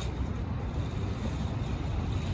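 City street traffic: a steady low rumble of passing vehicles with an even background hiss, no single event standing out.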